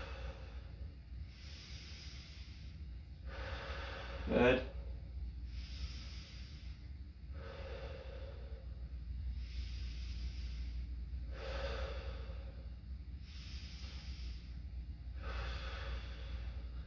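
A young man breathing slowly and deeply in and out through the mouth, each breath about a second long, on request for stethoscope listening to the back of the lungs. A short voice sound about four seconds in.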